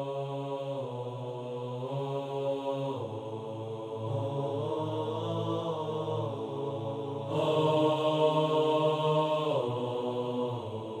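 Wordless chanted vocal music: long held notes with slow pitch changes, swelling louder about seven seconds in.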